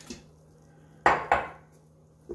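Two sharp clinks of kitchenware, a quarter second apart, about a second in, each ringing briefly.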